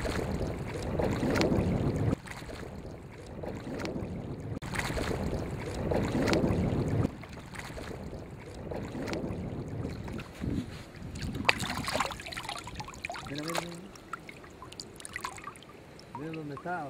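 Water sloshing and splashing with wind on the microphone, in stretches that cut off suddenly a couple of seconds in and again about seven seconds in.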